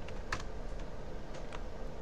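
A few separate computer keyboard keystrokes clicking over a steady background hiss.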